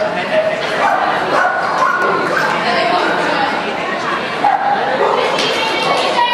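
Dogs barking over a steady hubbub of people's voices in an indoor hall.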